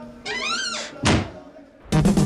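A brief rising sweep of tones, then a single heavy thump at about one second in. Music starts suddenly just before the end.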